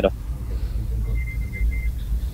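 A pause in speech filled by a steady low hum or rumble, with a faint, high, broken beeping tone about a second in.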